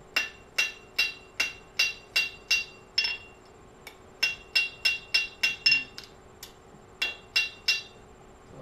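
A hand hammer strikes red-hot iron on an anvil in a steady run of blows, about three a second, as a T-rivet blank is flattened and straightened. Each blow carries a bright metallic anvil ring. The blows pause for about a second a little before the middle and thin out briefly before the last few.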